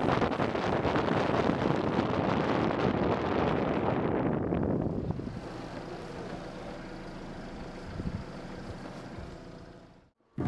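Wind rushing over the microphone with road noise from a camera moving at speed down the road. It eases off about halfway, leaving a quieter steady noise with a brief knock near the end before it fades out.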